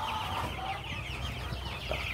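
A flock of about four-week-old broiler chicks peeping: many short, high, falling peeps overlapping in a steady chatter.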